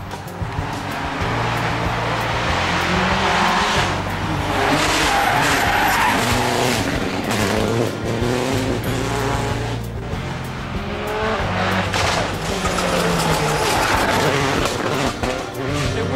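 Rally car engine revving hard through a hairpin, its pitch climbing and dropping several times as the driver works the throttle and gears, with tyres skidding on the tarmac. Background music plays underneath.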